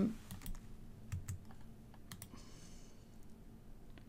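A few faint, scattered computer keyboard keystrokes, most in the first half.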